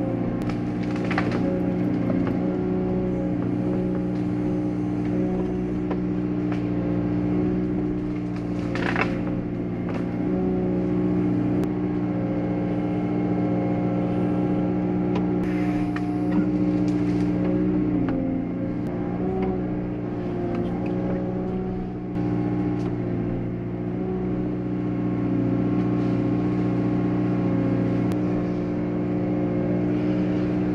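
Liebherr 914 wheeled excavator's engine and hydraulics running steadily, heard from inside the cab. A few sharp knocks stand out, about a second in, about nine seconds in and again around sixteen seconds, as the grab handles fallen tree wood.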